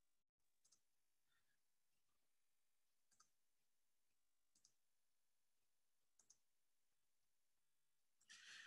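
Near silence broken by about five faint computer mouse clicks, two of them in quick succession late on, as a presentation is brought up on screen.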